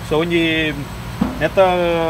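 Speech: a person's voice drawing out a long 'so', then a second long held vowel near the end.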